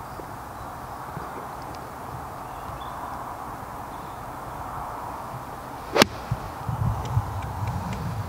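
A wedge striking a golf ball off the turf: one sharp click about six seconds in, after a few seconds of quiet open-air background. The golfer feels he didn't quite catch it.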